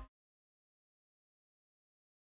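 Silence: the soundtrack is blank once a music cue cuts off right at the start.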